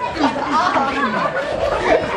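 Several voices of children and teenagers chattering over one another during rough-and-tumble play.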